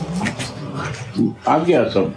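A man's voice speaking, with the words unclear.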